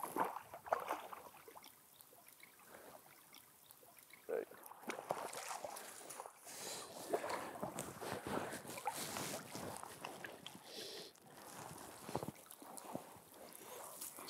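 Shallow river water splashing and sloshing as a hooked brook trout thrashes at the surface and is scooped into a landing net. After a quiet stretch of a couple of seconds, the splashes come irregularly from about four seconds in.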